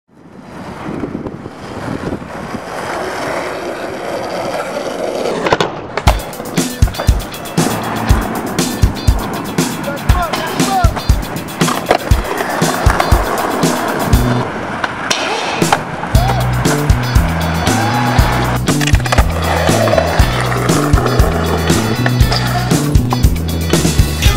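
Skateboard wheels rolling on street asphalt, with many sharp clacks, under a music track. The sound fades in at the start, and a repeating bass line comes in about two-thirds of the way through.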